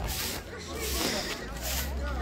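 Distant voices talking over a steady low rumble, with soft rhythmic scuffing strokes about twice a second.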